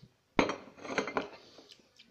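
Drinking glasses clinking as a tall glass is picked up and knocked among the other glassware: one sharp clink about a third of a second in, then several lighter clinks and taps.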